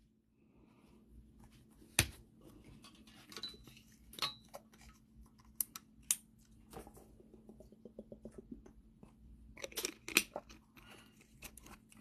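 Quiet handling of trading cards and a rigid plastic card holder: a sharp click about two seconds in, then scattered small ticks and rustles, busier near the end, over a faint steady hum.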